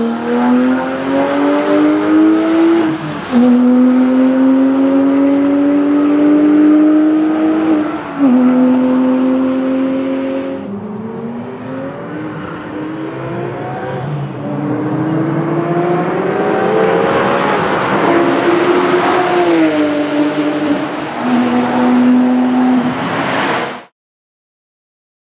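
Porsche 997 GT3 flat-six engines at full throttle on track: one car accelerates hard through the gears, its pitch climbing and dropping at upshifts about three and eight seconds in, then fades. After a lull another car comes on, climbing in pitch and then downshifting twice near the end, before the sound cuts off suddenly.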